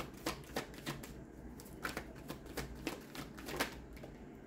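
A deck of oracle cards shuffled by hand: a run of soft, irregular card flicks and slaps, several a second.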